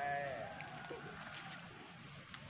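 An animal bleating once: a wavering call that drops in pitch and trails off over about a second and a half.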